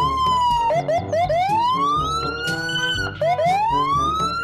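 Police car siren wailing in long rising sweeps, with a few quick short whoops about a second in. Near the three-second mark it drops and starts to climb again.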